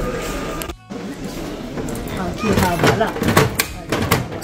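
Shop ambience with background voices and music, cut off briefly about a second in; near the end come a few sharp clicks from a capsule-toy vending machine's coin slot and turning dial.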